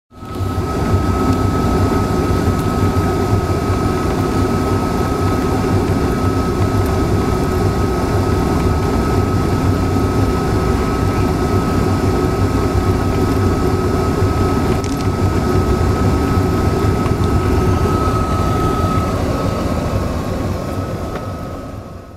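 Steady vehicle engine and road noise from a moving vehicle on a highway, with a thin steady whine running through it that stops a few seconds before the end. The sound fades out near the end.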